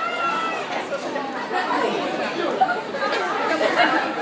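Concert crowd chattering between songs, many voices talking over one another with no music playing.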